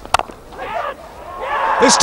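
A single sharp crack of cricket bat on ball just after the start, then crowd noise rising steadily as a catch is taken.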